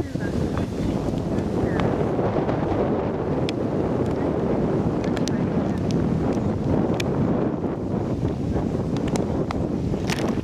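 Wind buffeting the microphone in a steady rumbling haze, with voices mixed in and a few faint clicks.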